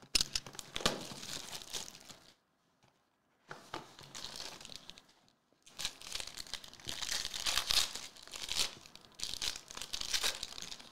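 A Topps Tier One trading-card box being opened and its foil pack wrapper torn open and crinkled by hand, in three bursts of rustling with short pauses between. The longest and loudest crinkling comes in the second half.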